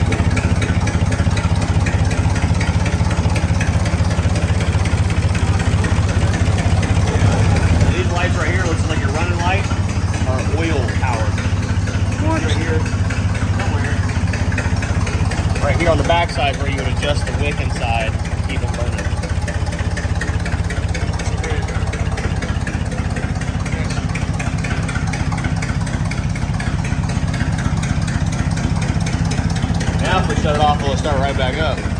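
1922 Mack Model AB truck's four-cylinder gasoline engine idling steadily with an even, rapid firing pulse.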